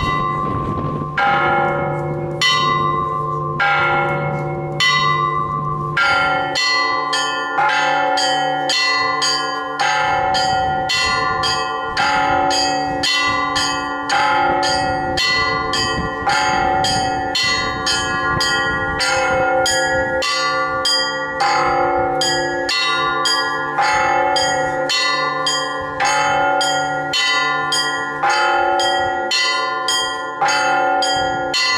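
Russian Orthodox church bells rung by hand from ropes by one ringer. It opens with about five slow strokes a little over a second apart, with a low hum beneath. From about six seconds in comes a quick, rhythmic peal on several bells together.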